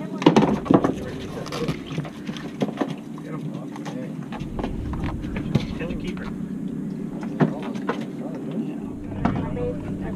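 Fishing boat's engine running with a steady low hum, while knocks and clicks sound on deck, most of them in the first few seconds, and voices murmur in the background.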